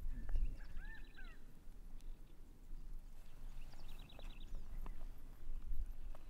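Birds calling in open grassland: a quick trill of rapid high notes about a second in and again about four seconds in, over a low rumble of wind on the microphone.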